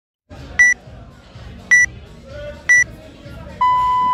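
Workout timer counting down to the start: three short high beeps about a second apart, then a long, lower beep that sounds the start of the workout, beginning near the end.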